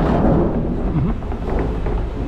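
A large four-wheeled plastic wheelie bin being pushed over concrete, its castors rolling with a steady loud rumble.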